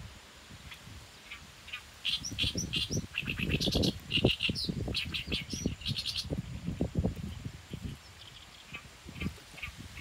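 A small bird singing from the reeds, a quick run of short repeated chirping notes between about two and six seconds in, with a few scattered notes after, over irregular low dull thumps.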